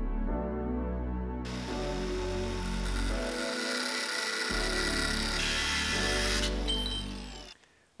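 Cordless angle grinder cutting into a steel chassis bracket, starting about a second and a half in and stopping a little after six seconds, then winding down. Background music with a steady bass line plays throughout and ends just before the close.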